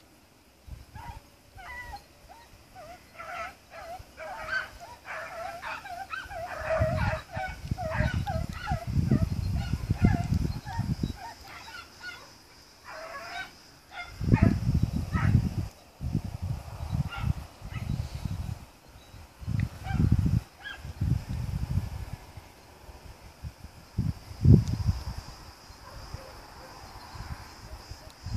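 A pack of red and blue tick beagles giving tongue on a hare's trail: many short, yelping bay calls in quick succession, thickest in the first half and thinning out later. Low rumbling bursts on the microphone are the loudest sounds, a few of them in the second half.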